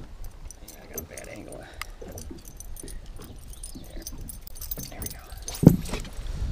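Light metallic clinking and rattling, many small ticks in quick succession, as hooks and tools are worked to unhook a small musky at the boat's side. A single loud thump comes near the end.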